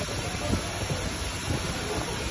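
Steady hiss with no pauses.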